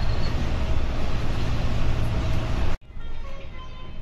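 Engine and road noise inside a Volvo 9600 coach (B8R chassis) cruising on a highway, with music underneath. The noise cuts off abruptly near the end, leaving only quieter background music.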